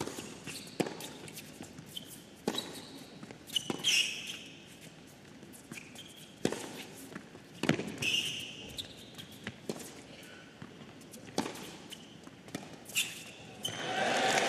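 Tennis rally on an indoor hard court: racket-on-ball strikes and bounces about every second and a half, with sneakers squeaking on the court surface between shots.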